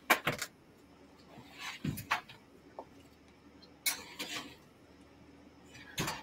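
Kitchen clatter of a tray of cookies going into the oven: sharp clicks and knocks at the start, a dull thump about two seconds in, and another short clatter around four seconds in.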